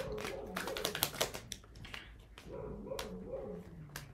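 A dog whining faintly in two drawn-out, wavering stretches, one at the start and one past the middle, with light clicks of tarot cards being shuffled.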